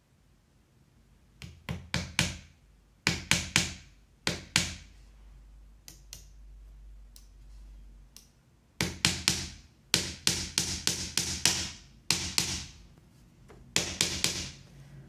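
Hammer tapping small nails into a thin plywood frame: quick runs of light, sharp strikes, several per nail, with short pauses between nails and a longer pause midway. The strikes are kept gentle so that the nails don't go through the thin wood.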